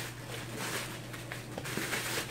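Plastic bubble wrap rustling and crinkling as it is pulled by hand off a glass candle jar, with a few faint crackles.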